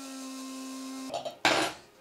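Small electric spice grinder running with a steady hum as it grinds flaxseed and chia seeds, the motor cutting off about a second in. A short, louder burst of noise follows about half a second later.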